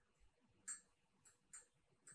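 Near silence broken by a few faint, irregularly spaced clicks.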